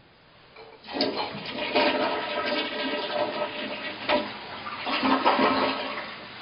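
A toilet flushing: a sudden loud rush of water starts about a second in, surges a few times, then eases into a quieter steady hiss near the end.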